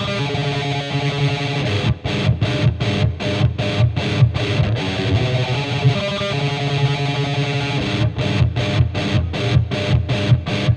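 Distorted electric guitar playing a tremolo-picked black metal riff. The sustained stretches break into a run of separately picked notes about two seconds in and again near the end.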